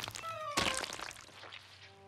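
Two cartoon impact sound effects, soft thunks about half a second apart with a short ringing after each, as ice cream scoops splat onto a bear's face; then it fades down.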